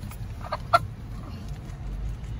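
A Polish chicken clucking twice in quick succession about half a second in, the second cluck short and louder.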